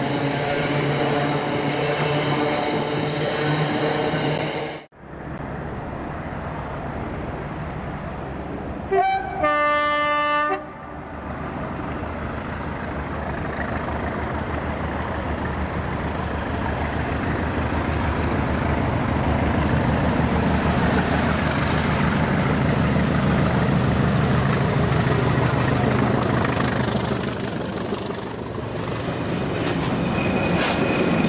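Freight hopper wagons rolling past until a cut about five seconds in. Then a Class 20 diesel locomotive sounds its horn, a brief note then a longer one of about a second and a half, and the English Electric engines of the pair of Class 20s grow steadily louder as the train approaches and passes, with a thin high whistle over the engine noise near the end.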